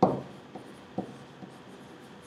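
Stylus writing on a tablet's hard surface, with a sharp tap at the start and lighter taps about every half second as the strokes are made.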